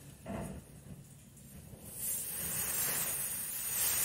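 Quiet at first, then from about halfway a steady hiss of wind that builds toward the end.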